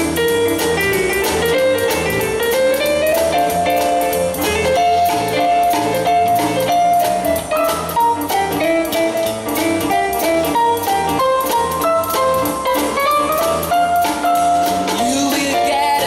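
Live jazzy band playing an instrumental passage of a Christmas song: electric keyboard carrying the melody over a drum kit keeping a steady beat.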